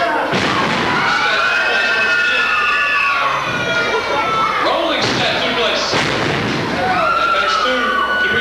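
Wrestlers' bodies thudding onto the wrestling ring mat, a heavy slam just after the start and several more thuds later on, over spectators shouting and calling out.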